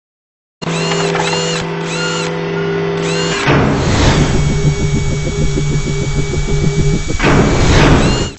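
Synthesized logo-intro music with electronic sound effects, starting about half a second in: a held chord with repeated short sweeping tones, then a whoosh about three and a half seconds in leading into a fast, even, mechanical-sounding pulsing, and another whoosh near the end.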